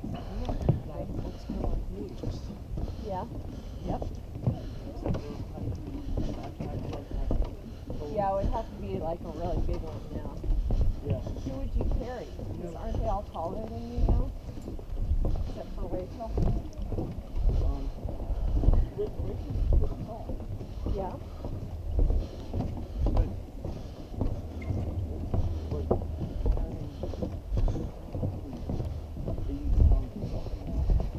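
Footsteps of several hikers on a wooden boardwalk, an irregular run of thuds on the planks, with wind rumbling on the microphone.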